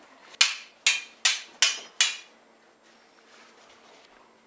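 Five sharp, loud hits in quick succession, about half a second apart, each dying away quickly, made in time with a kitchen knife raised and brought down in stabbing strokes.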